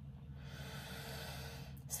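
A woman taking one long breath through her nose, an airy rush lasting a little over a second, during a sinus self-massage.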